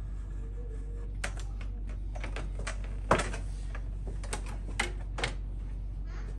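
Irregular light clicks and taps of hand tools (a trimming blade and a metal taping knife) being handled against the wall, the loudest about three seconds in, over a steady low hum.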